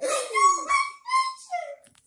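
A high-pitched voice making four or five short squealing calls, one sliding down in pitch in the first half second.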